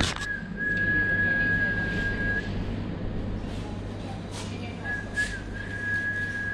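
A steady high whistling tone held on one pitch for about two seconds, stopping, then sounding again for about two seconds near the end, over a low steady hum with a few short clicks.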